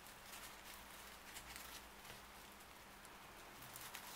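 Faint crackling and rustling of paper yarn (Rico Creative Paper) being worked and pulled through loops on a crochet hook.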